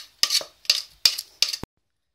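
A spoon clinking against a bowl as custard cream is scooped out: five sharp clinks about two to three a second, cut off abruptly about one and a half seconds in.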